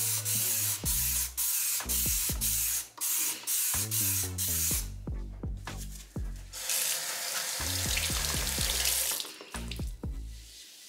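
Background music with a steady beat and bass, over a loud hiss of Dawn Powerwash dish spray being misted into a bathroom sink for the first five seconds. A second stretch of hiss follows from about seven to nine seconds in, as the sink is worked with a sponge.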